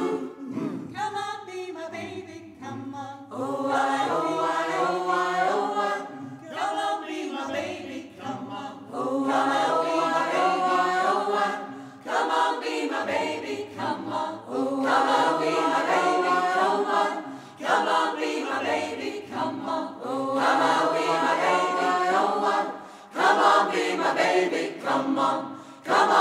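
Large mixed choir singing a cappella in close harmony, in short phrases of about two to three seconds with brief breaks between.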